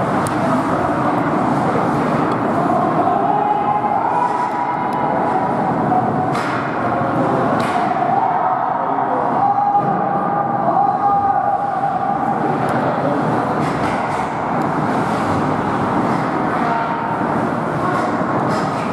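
Indoor ice hockey game: skates scraping and carving on the ice, with sharp clacks of sticks and puck, under the steady din of the rink and spectators. A faint held tone wavers in pitch through much of it.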